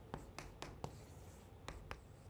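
Chalk drawing on a chalkboard: a faint run of short taps and scrapes, about six in two seconds, as lines and a circle are drawn.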